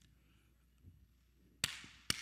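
Quiet room tone, then about one and a half seconds in a single sharp hand clap with a short echo.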